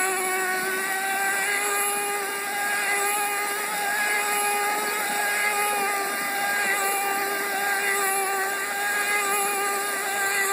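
Traxxas T-Maxx 2.5 RC truck's small two-stroke nitro engine buzzing at a high, fairly steady pitch with slight wavers in revs as the truck drives on gravel.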